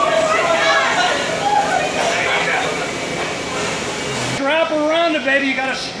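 People's voices throughout, not clear enough to make out words. From about four seconds in, one louder voice comes to the front, rising and falling in pitch as in a drawn-out holler.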